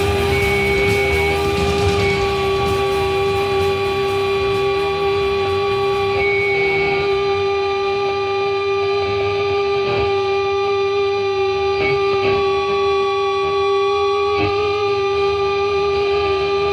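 The end of a death metal song: one held note rings on steadily, guitar feedback-like, while cymbal wash dies away over the first few seconds.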